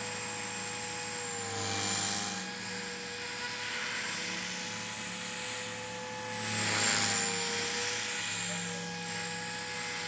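Blade 300X RC helicopter in flight: the steady whine of its brushless motor and spinning rotor, with two louder rushes of blade noise about two seconds in and again around seven seconds, when the whine's pitch dips briefly under load.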